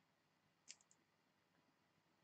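Near silence, with a quick run of three faint clicks a little under a second in.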